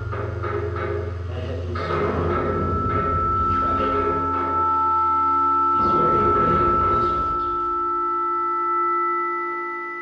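Live experimental electronic music: held drone tones layered over irregular knocking, clattering textures. A low hum underneath drops out about six seconds in, while a higher sustained tone carries on.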